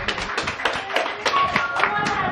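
People clapping their hands in a quick, steady rhythm, with voices calling out over it.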